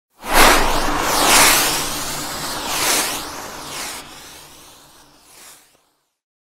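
Whooshing sound effects of an animated logo intro: a series of sweeping swooshes, the first and loudest right at the start, dying away over about five seconds.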